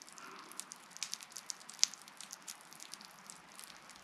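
Quiet room with faint, scattered small clicks and ticks, one sharper click a little under two seconds in.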